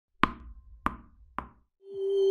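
Three sharp knock sounds of an intro sound effect, about half a second apart and each quieter than the last. Near the end a steady tone swells in.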